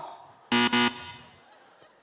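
A short electronic buzzer tone, starting abruptly half a second in and holding steady for about a third of a second before fading: the lie detector signalling that the answer is a lie.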